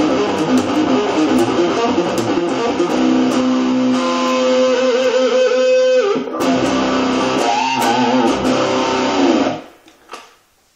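Electric guitar played with a distorted rock tone through a Marshall Reverb 12 transistor combo amp: busy riffing, then held notes with wide vibrato and a string bend, cut off abruptly near the end.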